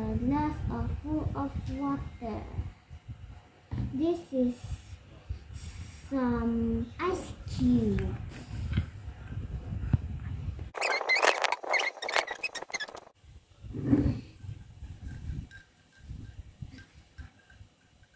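A child's voice speaking in short bits. Near the middle comes about two seconds of quick clattering as ice cubes are taken out of a ceramic bowl.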